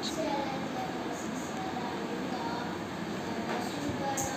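Steady rumbling background noise with faint, scattered voices in the distance.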